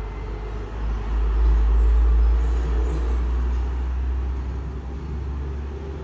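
Low rumble of road traffic going by, swelling about a second in and slowly fading.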